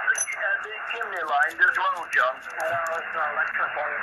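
A distant amateur radio operator's voice received on 40 m lower sideband and heard through the Xiegu X6100 transceiver's speaker. The speech is thin and narrow, with its high notes cut off and a hiss of band noise behind it.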